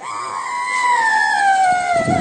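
A woman's long high-pitched wail: one unbroken cry that slides slowly downward in pitch. She is crying out while being prayed over in a deliverance (exorcism) rite.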